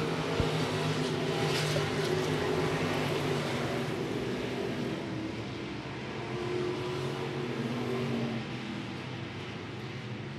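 V8 engines of several IMCA stock cars running at racing speed on a dirt oval as a pack goes by. The sound slowly fades, swells briefly about two-thirds of the way in, then drops away.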